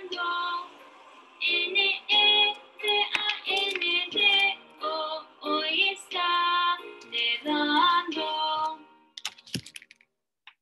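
Recorded children's weather song sung in Spanish, a woman's voice singing short phrases, which ends about nine seconds in; a few sharp clicks follow.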